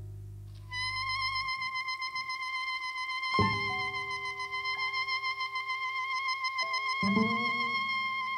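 Jazz saxophone holding one long high note with a slight vibrato, starting about a second in after a low chord dies away. Sparse accompanying notes are struck beneath it a few times.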